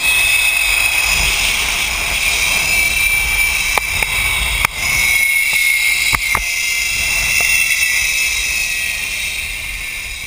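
Zipline trolley pulleys running along a steel cable: a steady high whine over wind rushing on the microphone, the whine's pitch easing slightly lower after about halfway through, with a few sharp clicks.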